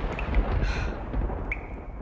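Steady rumbling noise with a heavy deep low end, with a few faint short high squeaks on top.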